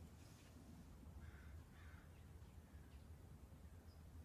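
Near silence outdoors with a low steady hum and two faint, short bird calls in the middle, like distant caws.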